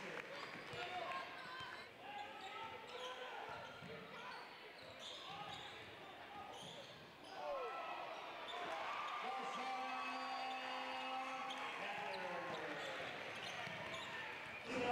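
Game sound in a high school gymnasium: many voices from the crowd and players, with basketball bounces. The crowd gets louder about eight seconds in, as a shot goes up at the rim, and stays loud with sustained yelling.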